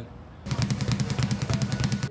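A rapid, even run of sharp drum-like taps, about ten a second, starting about half a second in.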